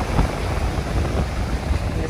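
Wind rumbling on the phone's microphone over the steady wash of surf breaking on the shore.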